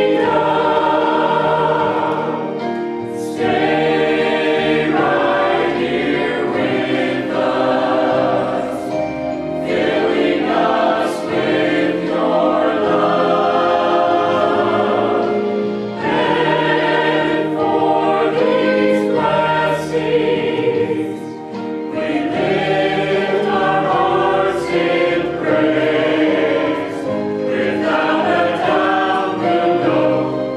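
Mixed-voice church choir singing a hymn under a director, in sustained phrases with brief breaks between them.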